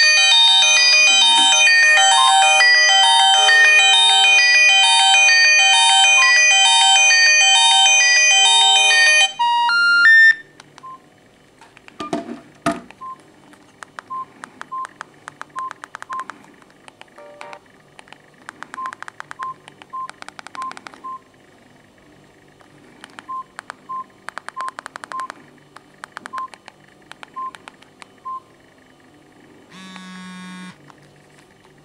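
A feature-phone ringtone for an incoming call, a loud electronic melody that plays for about nine seconds and then cuts off with a short rising run of tones. After it come scattered short keypad beeps and button clicks as the phone's menu is stepped through.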